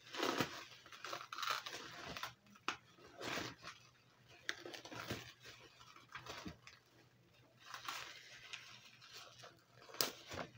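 Clear plastic wrapping around a bundle of fabric being torn open and crinkled by hand, in irregular bursts of rustling and tearing.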